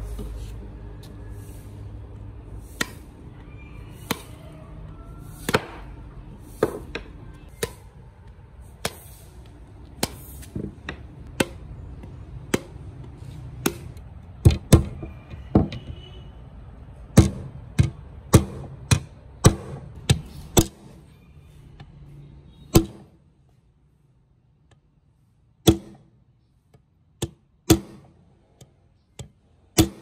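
Hammer strikes on a steel pin being driven and peened through a machete's steel socket into its wooden handle. The sharp single blows come about one a second, bunching closer together in the middle, then sparser near the end.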